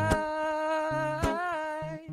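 A man singing one long held note, bending slightly in pitch about halfway, over acoustic guitar with two strums, one just after the start and one a little past the middle.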